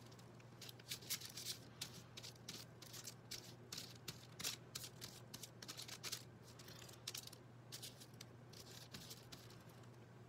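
Faint, irregular scratchy strokes of a paintbrush dabbing and scrubbing acrylic paint onto absorbent cardboard triangles, with light paper rustling as the pieces shift, over a steady low hum.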